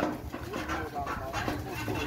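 Quiet, untranscribed talking from people walking along, softer than the nearby speech before and after, over a low steady rumble.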